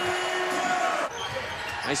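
A basketball bouncing on a hardwood court over arena noise. The arena noise is fuller for about the first second, then drops off.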